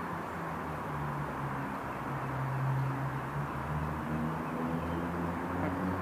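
A steady low mechanical hum with a faint drift in pitch, over a wash of background noise.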